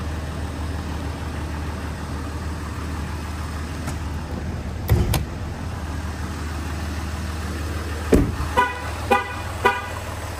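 Steady low hum, with a thump about five seconds in and another just after eight seconds, followed by three short beeps about half a second apart.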